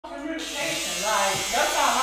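Electric hair clippers buzzing steadily during a haircut, with a person talking over them from about half a second in.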